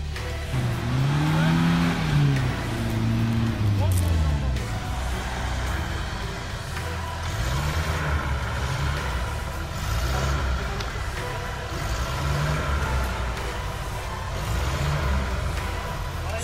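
An off-road 4x4's engine revving up and down in slow surges under load on a steep dirt slope: one long rise and fall, then a run of shorter, repeated throttle surges.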